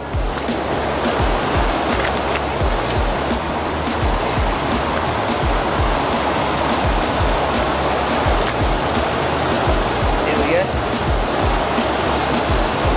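Creek water rushing steadily over and below a small weir, with a soft, regular beat of background music underneath.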